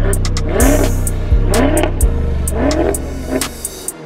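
2015 BMW M5's twin-turbocharged V8 revved in four quick blips while standing still, each rev rising and falling in pitch, with sharp pops from the exhaust.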